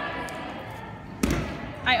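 A single loud, dull thud a little over a second in, against the low background noise of a large gym hall.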